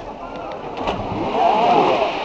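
People's voices with one louder call about one and a half seconds in, over a steady background rush.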